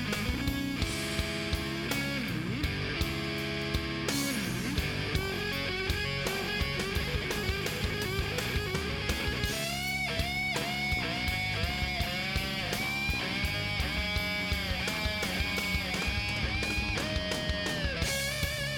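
Rock band playing live with no singing: an electric guitar leads over a steady drum beat. From about ten seconds in the guitar plays a solo of bent, held notes with vibrato.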